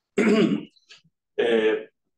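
A man clears his throat once, a short rasp, followed about a second later by a hesitant "uh".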